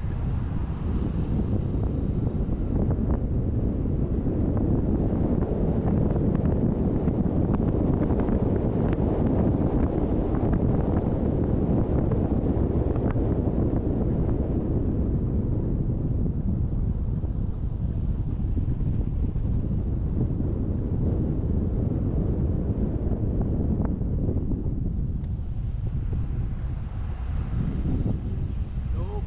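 Steady low rumble of wind buffeting the microphone together with the road noise of a moving vehicle. It eases a little near the end.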